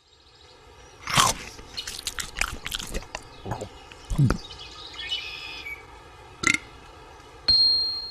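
Animated-logo sound effects: a run of sharp whooshes and clicks, a short bird-like chirp in the middle, a sharp hit, then a loud, bright ding that rings on steadily near the end.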